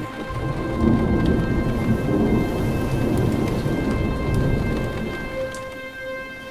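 Thunder rumbling with steady rain, swelling about a second in and easing off near the end, over a steady background music drone.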